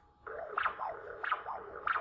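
Pulsed-wave Doppler audio from an ultrasound machine sampling blood flow in the common carotid artery: a pulsing whoosh with each heartbeat, about three beats. It starts about a quarter second in. The velocity scale is set too low and the systolic peaks are aliasing.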